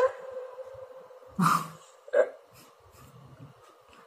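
Two short vocal sounds about a second apart, over a faint steady hum, just after music cuts off.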